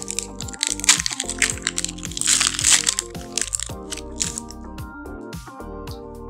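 A Pokémon TCG booster pack's foil wrapper crinkling and being torn open, in loud crinkly bursts about a second in and again from about two to nearly four seconds in, over background music.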